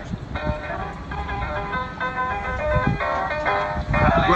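Acoustic guitars and a ukulele strumming the instrumental opening of a song, moving through a quick run of chord changes.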